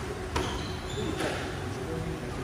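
Squash ball struck by a racket and then hitting the wall less than a second later, two sharp impacts in a large hall, with short high squeaks of shoes on the wooden court floor between them.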